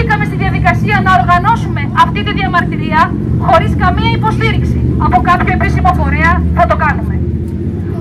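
A woman speaking Greek through a handheld megaphone, reading a statement without a pause. Her voice is thin, with no low end, and a steady low rumble runs underneath it.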